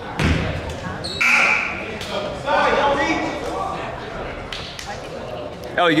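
A basketball bouncing a few times on a hardwood gym floor, with voices calling out from players and the sidelines, echoing in the large gym.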